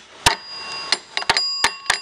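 Small metal bell on a homemade contraption struck about five times in quick succession, each sharp strike leaving a high ringing tone that carries on between strikes.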